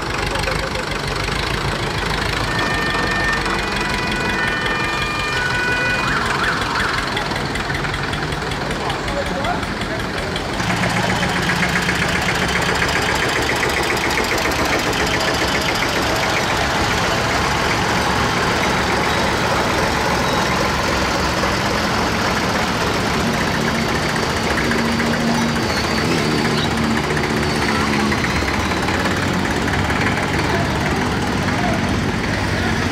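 Vintage tractor engines running as the tractors drive slowly past one after another, with people talking over them; the sound gets abruptly louder about ten seconds in.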